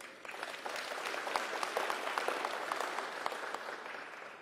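Audience applauding: a patter of many hands clapping that starts just after the beginning and dies away near the end.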